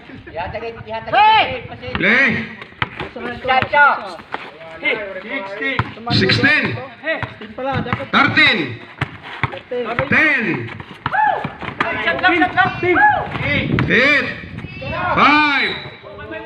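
Several voices shouting and calling out over a basketball game, with a few short thuds of the ball being dribbled on a concrete court.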